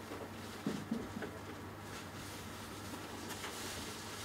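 Handling noise of a Canon Extender EF1.4x II being turned in gloved hands: a few soft knocks about a second in and a brief rustle near the end, over a steady low room hum.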